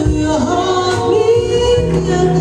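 Female vocalist singing with a live small band of upright bass, drum kit, keyboard and saxophone. Her voice dips, then glides up into a held note about halfway through, over a steady bass line.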